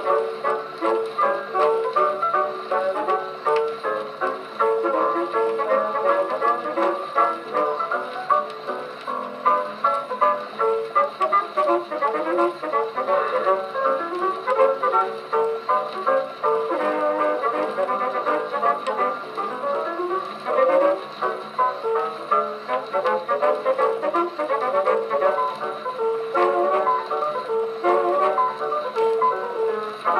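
A 1919 Edison Diamond Disc phonograph, Model B-19, playing a record of a dance orchestra with brass to the fore. The sound is thin, with no deep bass.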